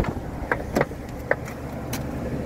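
BMW E92 coupe's door handle pulled and the door latch clicking open, followed by a few lighter clicks as the door swings open.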